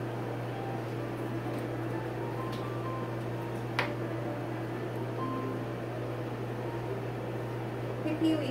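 Steady low hum of room machinery, with a single sharp click about four seconds in.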